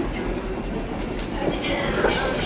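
Steady rumbling background noise with people's voices talking in the background.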